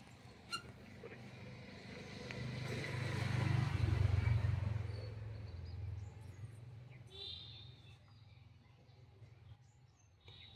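A motor vehicle passing by, its engine sound swelling to a peak a few seconds in and then fading away. A sharp click comes about half a second in.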